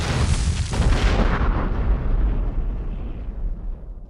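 A cinematic boom sound effect for a logo reveal: it hits suddenly and then fades away in a long tail over about four seconds.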